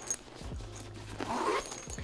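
Faint rustling of a small nylon camera sling bag as it is handled.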